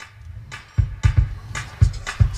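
Music with an electronic drum beat starting suddenly, played from a phone over a car stereo through a Bluetooth aux receiver.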